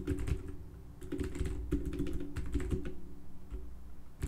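Typing on a computer keyboard: a quick, irregular run of key clicks, with a brief lull about half a second in.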